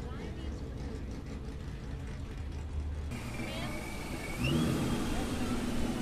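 A car engine running at a low idle, then a car engine revving up briefly and settling into a loud, steady idle, with voices in the background.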